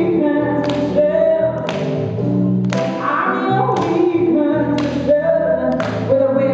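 Live song: a woman singing over held chords from a Roland Juno-D synthesizer, with a sharp percussive hit about once a second keeping the beat.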